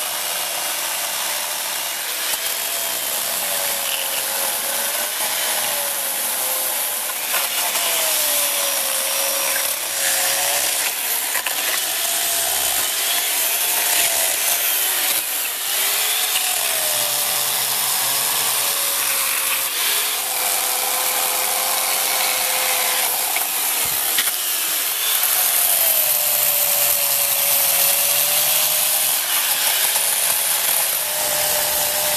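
Corded electric chainsaw cutting and smoothing myrtlewood. Its motor whine dips and recovers again and again as the bar is pressed into the wood and eased off.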